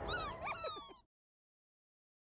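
Several short, squeaky cartoon creature calls overlapping, each gliding up or down in pitch, for about the first second; then the sound cuts off to dead silence.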